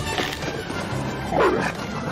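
A cartoon dog and werewolf growling and barking as they tussle over a frisbee, with film music underneath. The loudest cry comes about one and a half seconds in.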